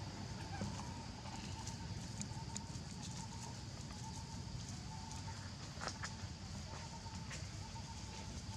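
Forest ambience: a steady low rumble and a faint high hiss, with a thin mid-pitched tone that comes and goes and a few sharp clicks near the end.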